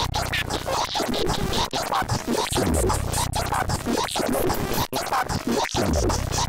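Electronic music from a pulsar synthesizer: a busy stream of short, chirping, scratchy pulses, cut by brief sudden gaps. Beneath it a deep bass tone comes in for about a second and a half roughly every three seconds: at the start, halfway through and again near the end.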